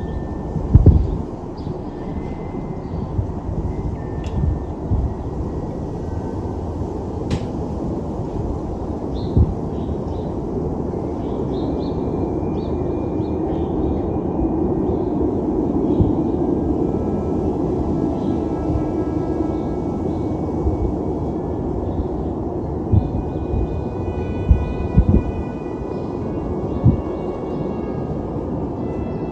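Steady low rumble of urban outdoor background noise, broken by a few irregular low thumps, with faint sustained high tones joining in during the second half.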